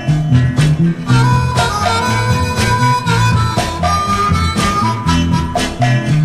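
Blues record played from a vinyl 45: a harmonica holds long notes, stepping up in pitch a little past halfway, over a steady beat of drums, bass and guitar.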